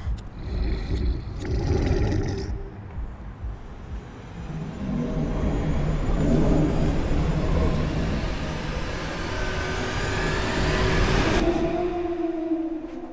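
Low rumbling noise that swells and rises in pitch over several seconds, then cuts off suddenly near the end.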